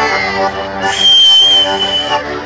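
Ciociaro folk dance music with steady held notes, cut through about halfway in by a loud, shrill whistle held at one pitch for about a second.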